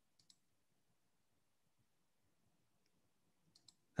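Near silence, with two faint clicks a moment in and two more near the end.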